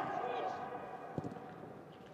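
Football pitch sounds in a near-empty stadium: a voice trails off at the start, then a single sharp ball kick about a second in, over quiet ambience with no crowd noise.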